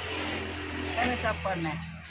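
A motor vehicle engine running close by as a steady low drone, with faint voices in the background.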